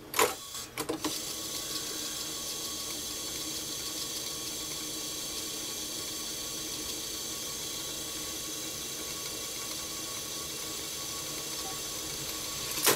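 Panasonic RQ-706S reel-to-reel tape recorder: a clack as the function lever is thrown, a second click just under a second in, then the transport fast-winding the tape with a steady whir from the motor and spinning reels.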